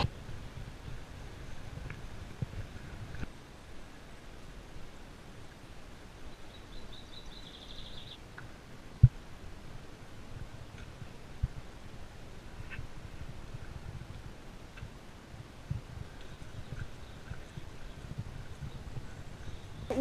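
Quiet outdoor ambience with a low rumble, scattered faint knocks and taps, and one sharp knock about nine seconds in. Partway through, a bird gives a brief rapid trill of repeated high notes.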